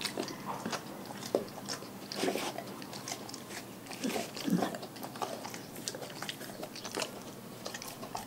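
A dog chewing and biting through a whole raw fish, with irregular wet crunches as its teeth break it up.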